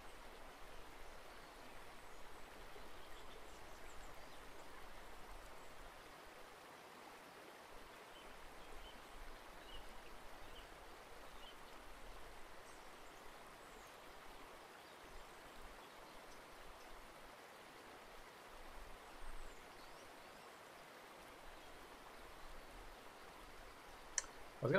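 Near silence: a faint, steady hiss of room tone with a few faint ticks.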